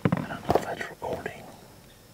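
Camera being handled during setup: a few sharp clicks and knocks, with low whispered speech in the first second or so.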